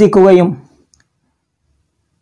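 A man speaking Malayalam for about half a second, then the sound cuts to dead silence.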